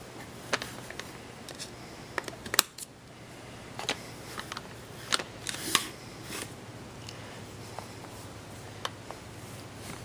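Sharp metallic clicks and clacks of an AR-15 rifle being broken down by hand: the takedown pins pushed out and the upper receiver swung open and lifted off the lower receiver. The clicks are irregular, the loudest about two and a half seconds in.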